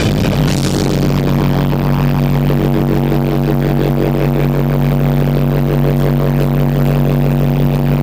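Live rock band's amplified electric guitars and bass holding one loud, sustained chord that rings steadily.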